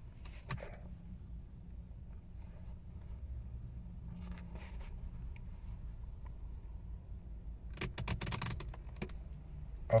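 Quiet car-cabin background: a low steady hum, with a few faint clicks and rustles about half a second in, midway and near the end.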